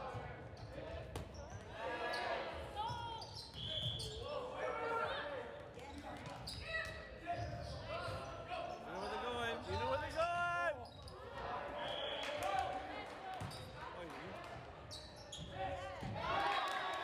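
Volleyball rally in a gym: sharp knocks of the ball being hit and landing, squeaks and shouts from the players, echoing around the hall.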